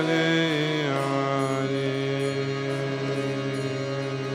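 A man singing a devotional chant to harmonium accompaniment: his voice slides and wavers through the first second, then holds one long steady note over the harmonium's sustained reed tones.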